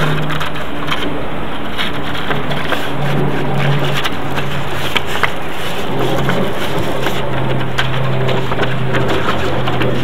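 A sheet of 220-grit sandpaper crinkling and crackling as it is folded and creased by hand, over a steady low hum.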